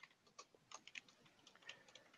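Faint computer keyboard typing: scattered, irregular keystroke clicks.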